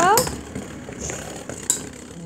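Two Beyblade spinning tops whirring and scraping against each other and the plastic stadium bowl just after launch, with a sharp click near the end.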